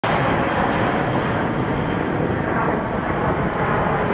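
Boeing C-17 Globemaster III's four turbofan engines heard as a steady jet roar while it flies low overhead, with no breaks or changes in level.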